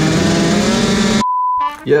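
Two-stroke dirt bike engines running at the start gate, with the nearest being a Husqvarna TC105 Supermini, cutting off abruptly a little over a second in. A short steady beep follows right after.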